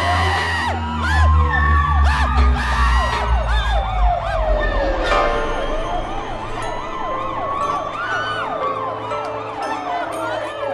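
Police siren wailing in slow rises and falls, with a second, faster siren sweeping up and down several times a second over it. A deep rumble runs under the first few seconds.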